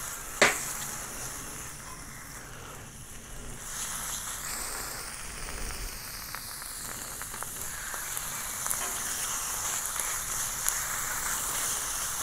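Marinated chicken pieces sizzling on a hot steel fire plate over a wood fire, laid skin side down. There is a sharp click about half a second in, and the sizzling grows louder about four seconds in as more pieces go down.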